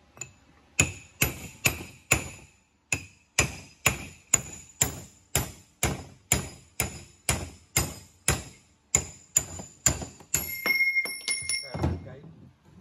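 A hammer drives a steel punch into a TH400 automatic transmission's clutch drum: sharp ringing metal-on-metal strikes, about two a second, some twenty in all, knocking out a part after the transmission broke, its front hub probably stripped. Near the end the blows give way to about a second and a half of steady metallic ringing.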